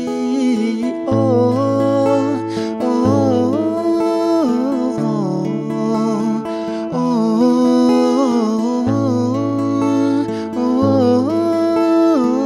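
A man singing a slow song with long, held notes, accompanied by an acoustic guitar.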